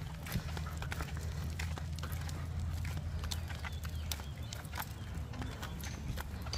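Wheels of a pushed stroller wagon rolling on asphalt, a steady low rumble, with footsteps and irregular light clicks and rattles from the wagon.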